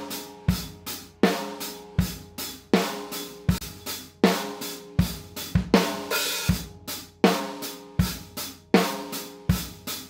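Drum kit recorded on a single mono room mic, playing a steady kick-and-snare beat with cymbals and hi-hat, with hits about every three-quarters of a second. It is played back through RS124-style tube compressor plugins, the Abbey Road EMI RS124 and the Waves RS124. A brighter cymbal hit comes about six seconds in.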